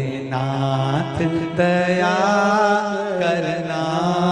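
A Hindi devotional bhajan to Shiva sung with musical accompaniment: a voice holding long, wavering notes over a steady low drone, with a short break about a second in.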